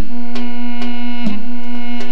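Instrumental break of a song: a keyboard synthesizer melody over a steady held drone note, with a percussion hit about twice a second.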